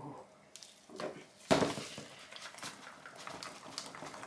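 Wire whisk stirring thick soap batter in a plastic jug, with small clinks and scrapes. A sharp knock comes about one and a half seconds in, the loudest sound, with a smaller one just before it.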